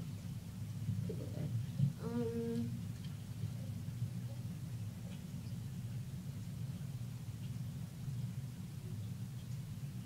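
A steady low background hum, with a girl's single short hummed note about two seconds in.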